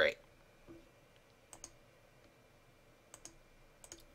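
A few faint computer mouse clicks, two of them quick press-and-release pairs about a second and a half apart.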